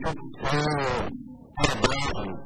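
A man speaking Portuguese, holding one long, wavering vowel about half a second in before carrying on.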